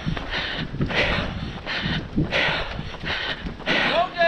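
A runner's footfalls on pavement and breathing, picked up close to the running camera in a steady, even rhythm.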